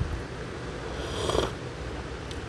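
A short slurping sip of coffee from a ceramic cup about a second in, over a low steady room hum.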